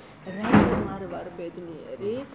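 A single loud thud about half a second in, dying away within a fraction of a second.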